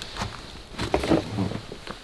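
Paper rustling, with small knocks and scrapes, as a gas mask filter canister is handled and lifted out of a wooden crate full of wrapping paper.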